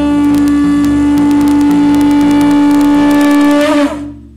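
Conch shell trumpet blown in one long, steady note of about four seconds, wavering briefly as it breaks off near the end.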